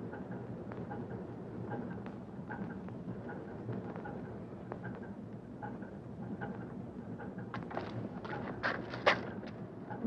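Steady background noise with faint scattered ticks and shuffling, then a cluster of sharper knocks and clatter about eight to nine seconds in.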